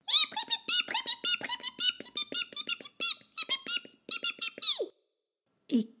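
A rapid run of high-pitched squeaky chirps, many per second, rising and falling in pitch, standing for a mouse chattering in its own language. It goes on for about five seconds and then stops suddenly.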